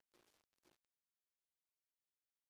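Near silence: the video's audio has ended.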